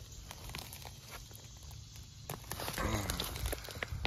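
Footsteps and rustling on dry leaf litter and dirt, with scattered small clicks and crackles, getting louder about halfway through.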